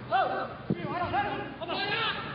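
Several short, high-pitched shouts from players or staff calling out on the pitch.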